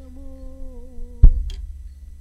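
A voice humming one long held note, then a single bass drum hit about a second in, the loudest sound, with a lighter click just after.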